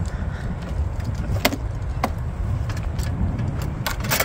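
A wooden drawer lid and kitchen gear being handled, giving a few sharp clicks and knocks, one about a second and a half in and another just before the end. These sit over a steady low rumble.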